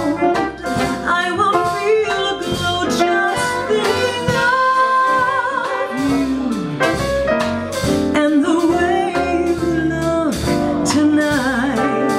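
A woman singing a jazz song, holding notes with vibrato, backed by a small jazz combo with piano and upright double bass.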